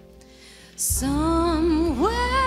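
A woman's amplified solo singing voice over instrumental backing. For the first second only a soft held chord sounds, then the voice and backing come in loudly, the voice wavering and bending in pitch.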